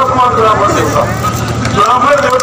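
A man making a speech through microphones and a public address system, over a steady low rumble.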